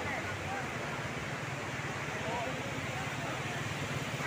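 Indistinct voices of people talking over a steady rushing outdoor background.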